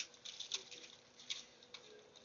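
Faint, scattered light clicks and rustles, irregular, about one to three a second, over a faint steady hum.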